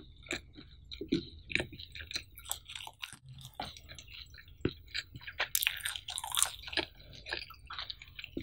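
Close-miked chewing of cheese pizza, with crisp crunches from the baked crust.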